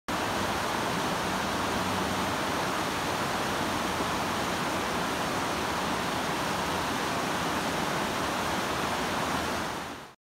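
Whitewater river rushing over boulders: a steady wash of water noise that fades out near the end.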